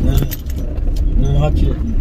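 Inside a car cabin: a steady low rumble of the car on the move, with a few sharp clicks and jingling rattles from something loose, such as keys.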